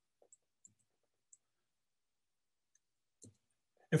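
A few faint, short clicks over near silence, then a soft sound shortly before a man starts speaking at the very end.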